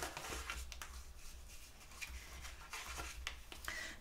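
Bone folder rubbing along the scored fold lines of a cardstock card base, burnishing the creases flat in a series of faint scraping strokes.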